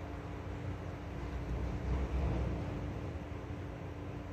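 Steady low hum with an even hiss behind it, and a louder low rumble swelling about two seconds in. No cat sounds can be heard.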